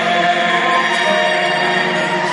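A woman and a man singing a duet together through a concert sound system over backing music, holding long sustained notes.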